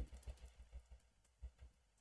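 Computer keyboard keys being pressed in a quick run of faint clicks, with two slightly louder strokes about a second and a half in, as code is cut and pasted.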